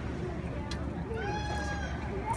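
A single drawn-out, high-pitched call, held for a little under a second in the second half, over a steady low rumble.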